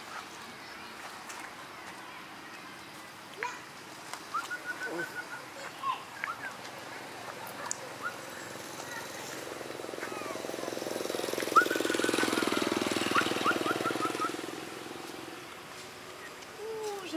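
A motorcycle engine passing, swelling to its loudest about twelve seconds in and then fading, over a scatter of short high chirps.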